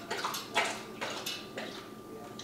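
A pet animal lapping water, a run of short, irregular wet laps a few times a second.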